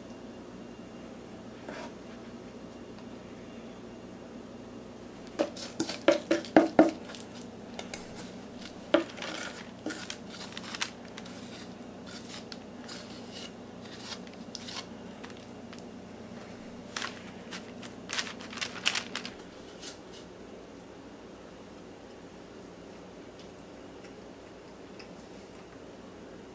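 A metal spoon tapping and scraping against a stainless steel mixing bowl while scooping out thick maple candy mixture, in three short runs of quick clinks, the first with a brief ring from the bowl.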